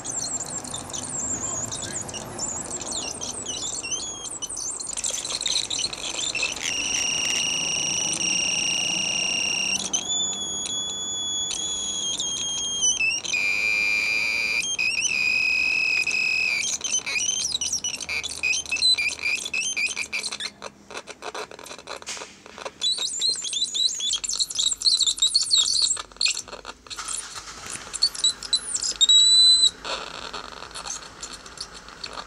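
Homemade low-tech touch synthesizer played by fingers pressing bare wire contacts: high-pitched electronic chirps and held tones that jump from one pitch to another, breaking into choppy, stuttering bursts in the second half.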